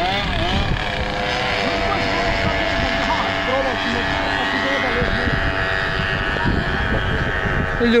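Classic racing motorcycles running on the circuit: a steady drone of engines heard from trackside, under a low rumble.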